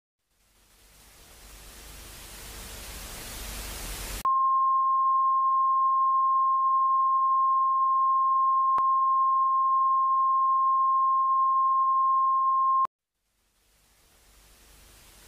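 Static-like hiss swelling up out of silence, then cut off by a loud, steady electronic beep tone, one unwavering pitch, that holds for about eight seconds and stops suddenly.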